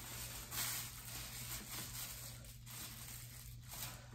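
Faint rustling of a thin plastic refill liner bag as it is pulled down from its cartridge into a cat litter disposal pail, with a slightly louder rustle about half a second in.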